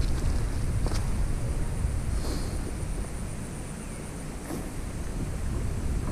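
Wind rumbling on the microphone, with a faint steady high whine above it and a light click about a second in.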